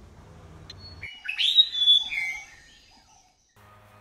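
A short flurry of bird-like chirps and whistled glides starts abruptly about a second in, after a faint background hum cuts out, and fades away by about three seconds in.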